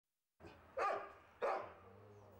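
A dog barking twice, about half a second apart, each bark dying away quickly.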